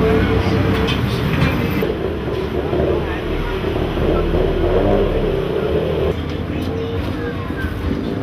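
Busy street ambience: many voices chattering in the background over a steady low rumble of traffic.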